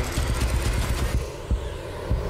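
Loud wind rushing past an open aircraft door in flight, with the jump plane's engine running underneath and gusts buffeting the microphone in uneven low thumps.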